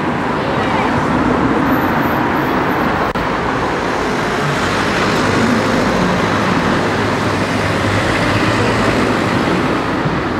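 Road traffic going by on a town street, with people talking in the background.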